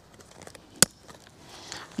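A plastic side-release buckle on a webbing strap clicking shut once, sharply, a little under a second in, over faint handling noise of the strap.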